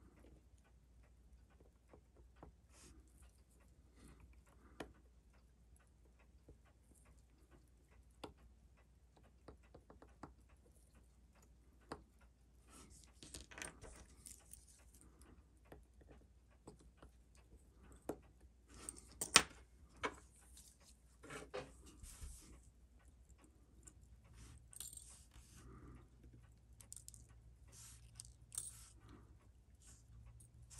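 Faint scattered clicks and short scratchy scrapes of small metal watchmaker's tools being handled, busier in the second half, with one sharp click just past the middle, over a low steady hum.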